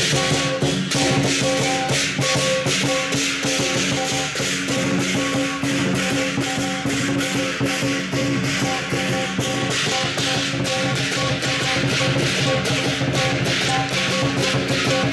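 Chinese percussion troupe playing a fast, continuous beat on a large drum and hand cymbals, with ringing metal tones sustained underneath.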